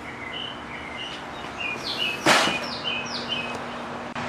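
Small birds chirping repeatedly in the background, short high chirps, some falling in pitch. A little past halfway comes a brief burst of noise, and a low steady hum runs after it.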